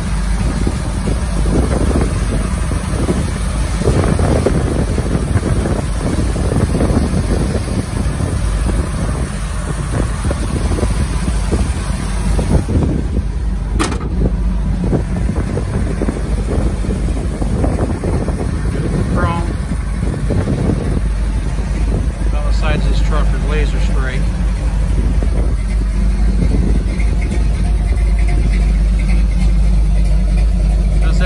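Ford 400 V8 idling steadily with a low, even rumble through dual Flowmaster exhausts. A single sharp click comes about halfway through.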